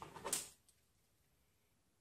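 A brief hiss in the first half second, then near silence: room tone only.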